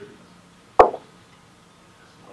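One short, sharp pop a little under a second in, much louder than the quiet room around it.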